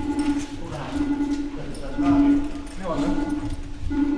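Alarm clock sounding in a repeating pattern, a low tone about once a second, left running in an empty flat.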